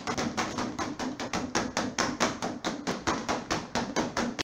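Punch balloon batted rapidly by hand on its elastic band: a fast, even run of rubbery smacks, about six a second.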